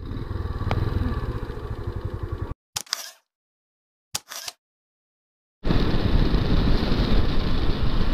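Motorcycle engine running at low speed, cut off suddenly into silence broken by two short clicks like a camera shutter, then the motorcycle riding on at road speed from about two-thirds of the way in.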